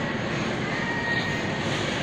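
Steady background noise of a supermarket, an even rush like air handling, with a faint high tone running through it.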